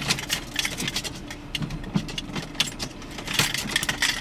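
Irregular light clicks and rattles of hands handling a BMW Business CD head unit, partly pulled out of its dash opening, as it is worked loose.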